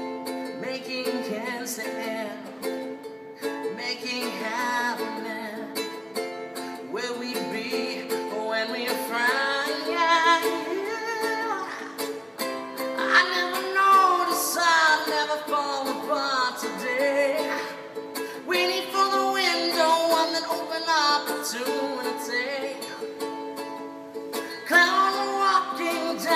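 A ukulele strummed in steady chords while a man sings an improvised melody, both echoing off the concrete of a parking garage.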